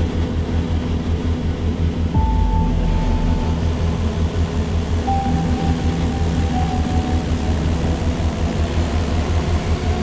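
A light single-engine propeller plane's engine drones steadily under background music. A deeper rumble swells in about two seconds in.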